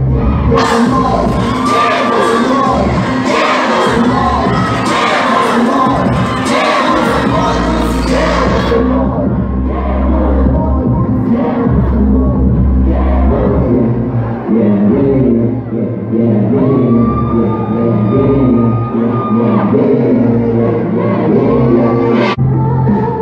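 A song's backing track playing loud through the stage loudspeakers, with the audience screaming and cheering over it for the first nine seconds or so. After that the crowd noise drops away and the music carries on.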